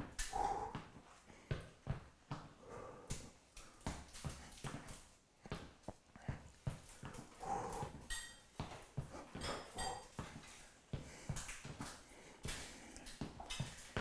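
Soft, irregular taps and knocks of sneakers on a wooden floor and a metal chair shifting as a seated exerciser alternates leg extensions and knee raises. A few faint, short vocal sounds come through every few seconds.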